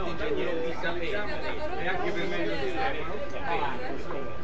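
Several people talking at once: steady, overlapping, indistinct chatter of a gathered group.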